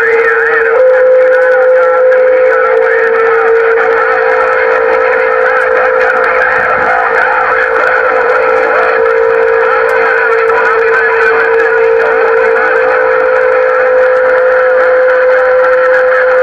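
CB radio speaker output: a steady whistle that steps up slightly in pitch about a second in, over a loud, warbling jumble of garbled signals on the channel.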